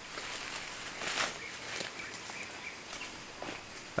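Quiet forest ambience from the field recording, with a steady high insect hum and a brief rustle about a second in.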